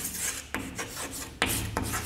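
Chalk scraping on a blackboard as letters are written: short rasping strokes with a few sharp taps of the chalk on the board.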